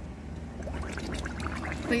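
Pool water lapping and splashing around a child holding the pool wall as she lowers her face to the water, over a steady low hum.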